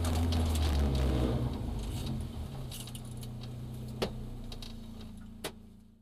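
Rally car engine heard from inside the cabin, dropping from a drone to a steady idle after about a second and a half as the car slows at the marshals. Two sharp clicks come about four and five and a half seconds in, and the sound fades away at the end.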